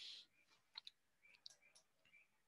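Near silence, broken by a few faint, sharp clicks about a second in and again near the end.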